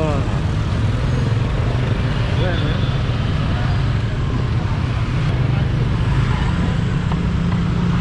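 Motorbike engine running steadily while riding slowly through street traffic, heard from the rider's seat; the engine note rises a little near the end.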